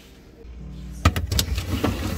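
Refrigerator being opened and a drawer of plastic juice bottles pulled out: a series of sharp clacks and knocks as the drawer slides and the bottles bump together, over a low rumble.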